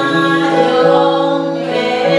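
A woman singing a slow song melody in long, held notes.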